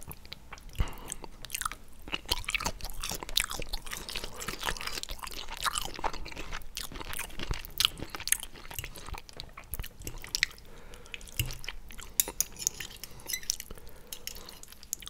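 Chewing squid ink pasta with shrimp up close: a dense run of irregular wet mouth clicks and smacks.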